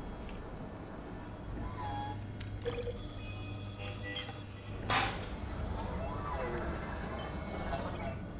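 Sci-fi film soundtrack: a steady low hum under small electronic chirps and beeps, with a sharp metallic clink about five seconds in as a revolver is lifted and handled.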